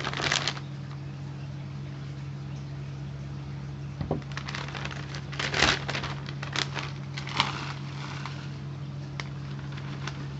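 Scattered dry rustling and crackling as loose terrarium substrate and a dry wooden tree decoration are handled, the loudest cluster about halfway through, over a steady low hum.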